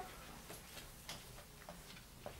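A quiet pause in a small room with a few faint, irregular clicks, about five in two seconds, close to the microphone.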